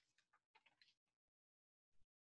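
Near silence: room tone from a video call, with faint brief ticks.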